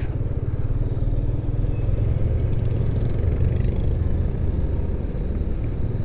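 Motorcycle engine running steadily while being ridden through slow city traffic, heard from the rider's own bike as an even low rumble.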